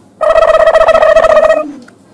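A steady pitched tone with a rapid flutter, starting a moment in and lasting about a second and a half.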